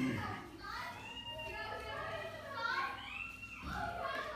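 Indistinct voices talking, with children's voices among them; no clear words can be made out.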